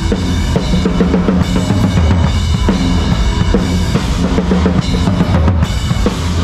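Pearl drum kit with Zildjian cymbals played hard in a live heavy-rock band: driving bass drum and snare hits with crashing cymbals throughout, over the band's sustained pitched instruments.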